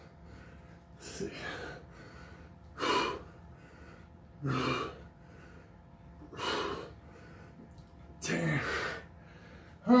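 A man's hard, forceful exhalations, one with each kettlebell swing: five short breathy bursts, about one every one and a half to two seconds, the breath of effort in a set of swings.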